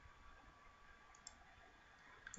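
Near silence: faint room tone with a single light computer-mouse click a little past a second in.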